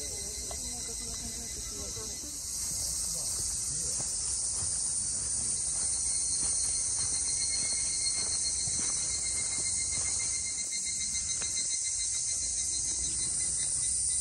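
Steady high-pitched drone of a summer insect chorus, typical of cicadas in the trees. It gets a little louder about two and a half seconds in.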